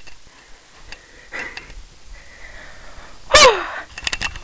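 A person's voice: soft breathy sounds and a few light clicks, then a loud, short cry with falling pitch about three and a half seconds in.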